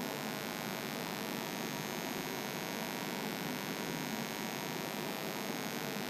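Steady electrical hum and hiss, unchanging throughout, with no other sound.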